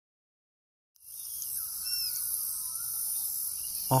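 Silent for the first second, then an outdoor wetland ambience fades in: a steady high-pitched insect drone, with a few short bird calls faintly behind it.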